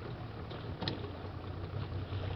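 A boat motor running steadily at low speed, a low even hum under a wash of water and wind noise, with a brief click a little under a second in.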